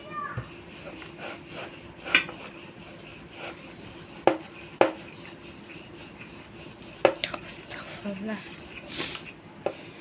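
Metal rolling pin rolling out dough on a round board: a low rubbing with a handful of sharp clacks as the pin knocks against the board.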